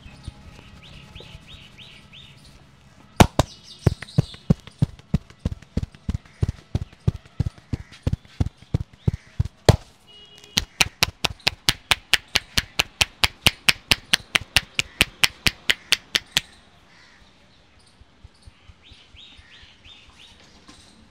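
Quick, sharp percussive slaps of a barber's hands, palms pressed together, tapping rhythmically on a man's head during an Indian head massage, about three to four strikes a second. They start a few seconds in, pause briefly about halfway and stop a few seconds before the end. Birds chirp faintly before and after.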